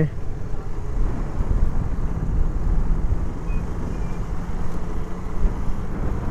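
Motorcycle running steadily while riding on the road: a continuous low rumble with a faint steady hum.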